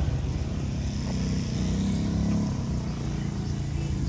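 A motorcycle engine running as it passes by on the street, a steady low hum.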